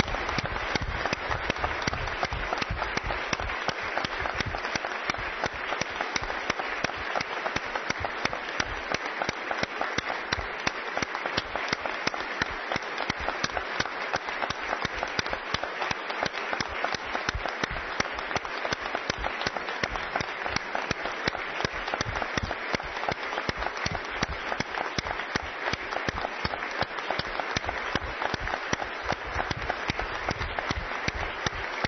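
Many people applauding together, a dense, steady ovation of clapping hands that holds at an even level throughout.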